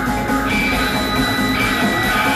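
Live band playing loud music with guitar and drums through a club PA. A high held note comes in about half a second in and stops about a second later.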